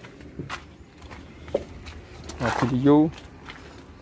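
A man's voice saying one drawn-out word about halfway through, over a low steady background hum with a few faint taps.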